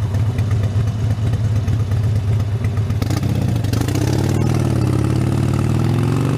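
Harley-Davidson Sportster 72's air-cooled V-twin running with a steady low rumble, then pulling away, its pitch rising from about the middle onward.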